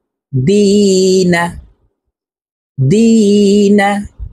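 A man's voice chanting Arabic letter-syllables, two long syllables with drawn-out long vowels held at a steady pitch, with a pause between them.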